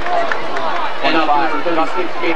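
Spectators' voices in the bleachers: a steady babble of overlapping talk and calls, a little louder about a second in.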